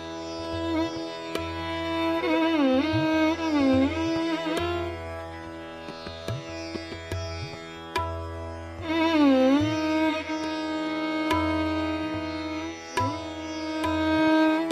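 Hindustani classical violin playing a raga: long sustained bowed notes with deep gliding slides down and back up (meend), over a steady drone, with a few sharp tabla strokes.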